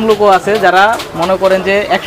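A man's voice talking in long, drawn-out, sing-song vowels, with no clear words.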